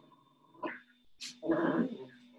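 A short pitched vocal sound, loudest about a second and a half in, after a brief click, over a faint steady electronic hum.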